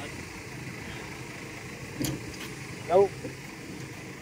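Steady low hum of an idling engine, with one sharp click about two seconds in.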